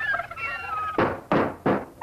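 A warbling, gliding high-pitched tone, then three loud knocks in quick succession, about a third of a second apart, starting about a second in.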